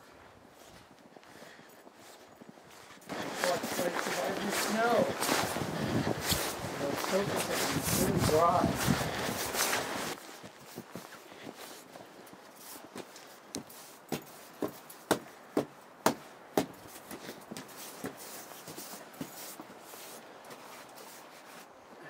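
Footsteps through deep snow and then onto a hard porch, ending in a run of sharp steps about half a second apart. A louder stretch of rustling noise comes a few seconds in and lasts several seconds.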